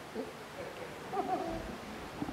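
Faint, indistinct voice sounds over quiet room tone, a couple of short murmurs about a second apart.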